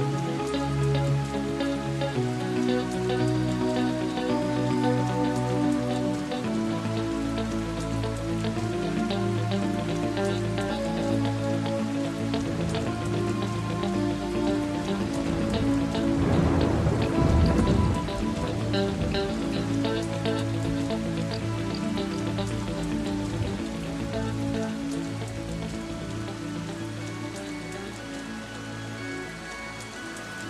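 Rain sound effect under sustained keyboard chords and held bass notes that change every few seconds, in the instrumental opening of a progressive rock song. A louder swell builds and breaks about halfway through, and the whole fades a little toward the end.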